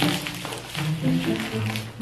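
Background music with a melody that changes note every few tenths of a second.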